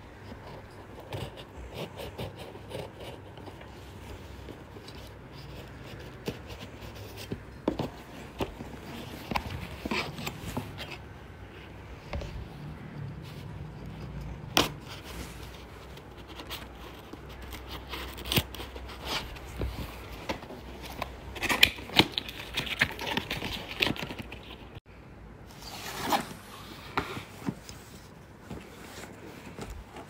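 A knife blade scraping and cutting at a cardboard box and its packing tape and plastic wrap, with irregular scratches, clicks and crinkling, and a louder ripping stretch about two-thirds of the way through as the box is torn open.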